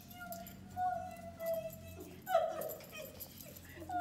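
Dachshund puppy whining, a string of short high whines, some falling slightly, the strongest about halfway through, with music playing underneath.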